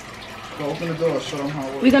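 Mostly speech: a low voice talking quietly in the room, then a woman starts speaking louder near the end.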